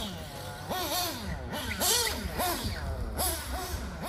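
Picco P3 TT nitro engine of an HB D817 1/8 off-road buggy revving under throttle blips, its pitch shooting up quickly and falling back again roughly every half second as the buggy is driven.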